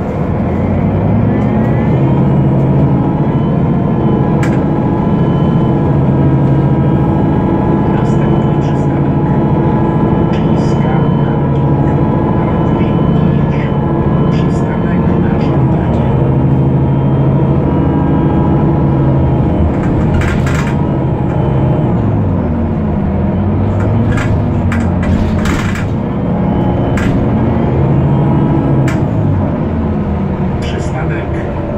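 A Solaris Urbino 12 III city bus heard from inside the cabin. Its DAF PR183 S1 diesel and ZF 6HP-504 six-speed automatic gearbox run under way, and the uploader calls the gearbox wrecked. The engine note rises near the start, holds steady, then drops and climbs again a couple of times past the middle, with a few sharp interior rattles.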